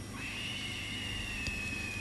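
A single high, steady note held for nearly two seconds, sinking slightly in pitch, from the show's eerie background music bed.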